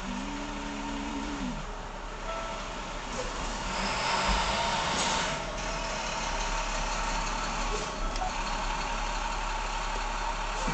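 Beer-delivery box truck moving slowly past in street traffic, its engine noise swelling about halfway through with a short hiss. A brief low pitched tone sounds at the very start.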